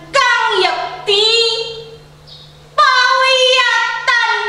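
A woman's voice reciting Javanese geguritan poetry in a drawn-out, sung delivery: long held phrases with sliding pitch, broken by a pause of about a second near the middle.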